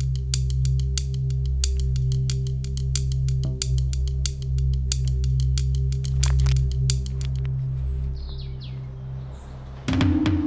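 Wooden drumsticks tapping quickly on a stone, several sharp clicks a second, over a sustained low musical drone. The tapping stops about seven seconds in, leaving the drone.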